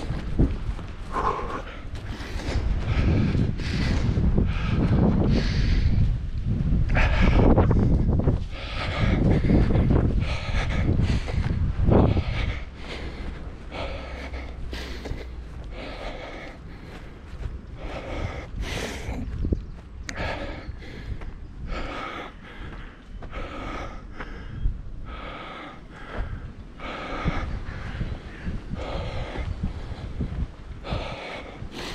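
A jogging runner breathing hard and rhythmically, with footfalls on grass and dirt path. The breathing is the sound of sustained running effort. A low rumble of wind on the microphone is loudest in the first twelve seconds, then fades.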